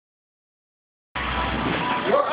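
A Jensen roadster's engine running in an enclosed garage, with a steady low rumble under a broad haze of noise, cutting in suddenly just over a second in.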